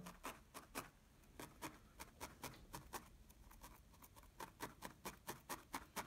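Felting needle stabbing repeatedly into loose wool on a wet-felted background: faint quick punches, about four a second.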